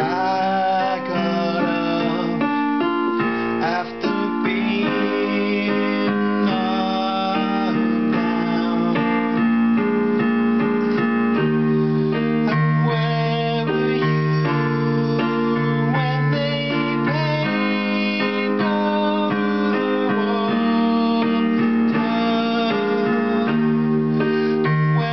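Electronic keyboard with a piano voice playing an instrumental passage: held chords in the low notes under a melody line in the upper keys.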